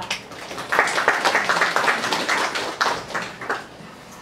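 Audience applauding: a round of clapping that starts a little under a second in and dies away shortly before the end.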